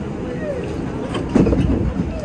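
Budd R32 subway car running between stations, with a steady low rumble of wheels on track. Nearby voices rise over it in the second half.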